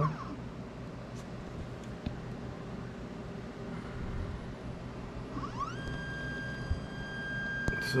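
Anycubic resin 3D printer mid-print, with a low steady hum. About five and a half seconds in, a rising whine settles into a steady high whine as the stepper motor drives the build plate through its lift.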